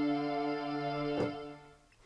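Synthesizer strings patch, a chord held on the keys without the sustain pedal. About a second in, the keys are let go and the sound dies away over about half a second.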